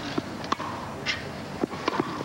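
Tennis ball struck by rackets in a rally on a grass court: two sharp pops about a second and a half apart, with lighter taps between them.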